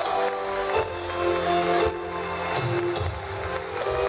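Instrumental passage of a live ballad: an acoustic guitar and a string section with violin and cello play between sung lines. A held vocal note ends just as the passage begins.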